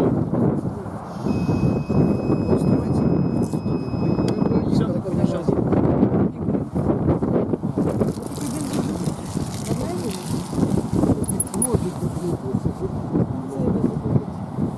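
A handheld breathalyzer gives a steady high-pitched beep for about three seconds while a breath sample is blown into its mouthpiece, over people talking.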